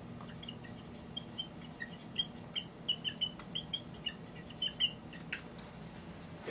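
Dry-erase marker squeaking on a whiteboard while writing, a quick irregular run of short, high squeaks.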